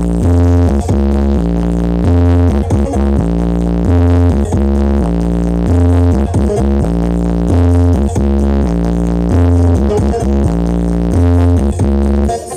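Bass-heavy electronic music played very loud through stacks of sound-system speakers during a sound check. A deep bass line steps between pitches in a pattern that repeats about every two seconds.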